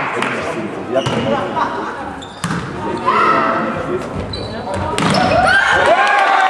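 Volleyball hits echoing in a large sports hall as the ball is served and played, with players and spectators shouting and calling, louder from about five seconds in.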